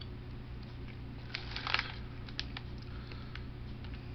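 Plastic snack bag crinkling as it is handled: a short burst of crackles about a second and a half in, over a steady low hum.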